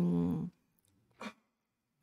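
A woman's speaking voice trailing off on a drawn-out syllable, then near silence broken by one brief breath-like vocal sound about a second in.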